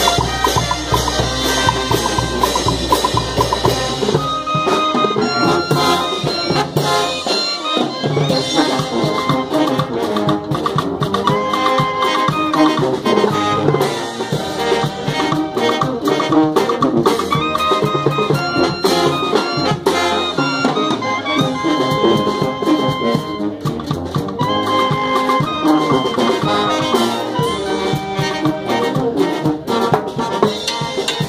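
Peruvian brass band playing live: trumpets, trombones and clarinet over bass drum, snare and cymbals, with a steady dance beat. A low bass is held for the first few seconds before the brass melody takes over.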